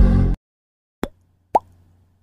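A music jingle cuts off just after the start; then come two short pop sound effects about half a second apart, the second a quick falling 'plop', the sounds of an animated logo intro.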